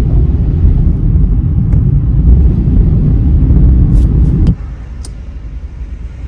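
Car driving, heard from inside the cabin: a loud, low rumble of engine and road noise that drops sharply about four and a half seconds in, with a couple of faint clicks.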